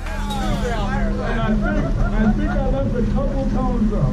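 Patrol car engine idling with a steady hum while the car stands still, under indistinct voices talking.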